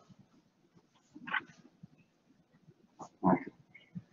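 Two short, muffled vocal sounds from a person, about two seconds apart, in a quiet room.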